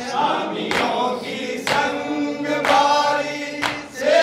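Male voices reciting a noha, a Shia lament, in chorus, with rhythmic chest-beating (matam) slaps landing about once a second.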